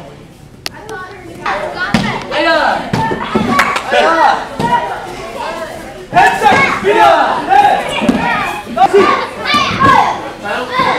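Children's voices and shouts in a large hall with an echo, with a few sharp thuds of kicks and strikes in the first few seconds.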